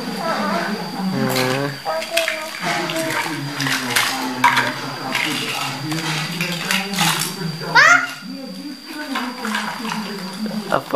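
Plastic toys clacking and clattering as they are handled and knocked together, with a few sharp clicks. A child murmurs and hums over them, and one rising squeal comes near the end.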